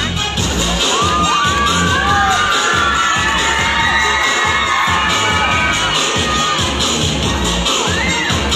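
Crowd of spectators, many of them children, shouting and cheering with high, wavering voices over dance music with a steady beat.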